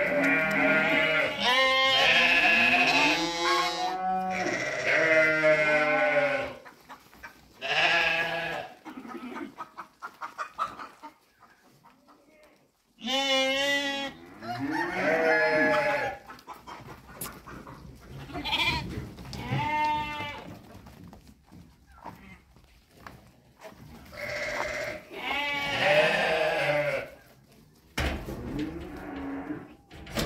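Romanov sheep bleating again and again, several calls overlapping in the first few seconds, then more bleats in groups every few seconds with quieter gaps between.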